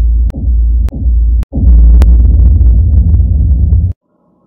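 Intro countdown sound effect: a loud, deep rumble with four sharp clicks about half a second apart, briefly dropping out partway through and cutting off suddenly near the end.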